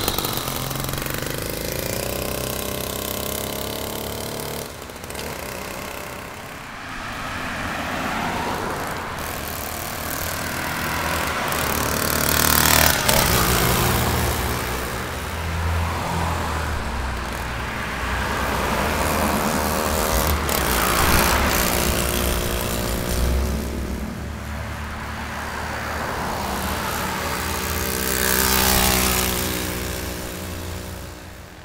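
Small two-stroke engine of a motorized bicycle with a jackshaft gear kit, running under way as the bike is ridden along a street. Its buzzing note rises and falls with the throttle and swells up several times as the bike comes close, loudest near the middle and near the end.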